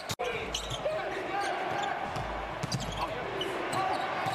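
Court ambience of a live basketball game: a steady arena hum with faint voices and game noise. It breaks off with an abrupt cut just after the start.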